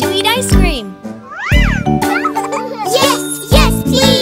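Cartoon characters' voices over bouncy children's background music: a woman's voice asks a question, then high-pitched children's voices answer excitedly.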